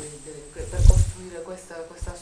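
Voices talking quietly in a room, with a dull, low thump just under a second in that is louder than the voices.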